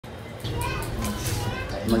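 High-pitched voices, like children playing or chattering, in the background from about half a second in; a louder, lower speaking voice starts at the very end.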